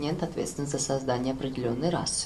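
Speech only: a person talking without a break.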